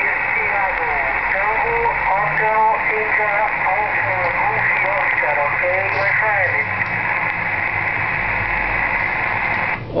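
A distant station's voice received in single sideband on a Realistic HTX-100 transceiver on the 27 MHz band: weak, hard-to-follow speech buried in steady static hiss, a long-distance signal with fading (QSB). The received signal and hiss cut off suddenly near the end as the transmission drops.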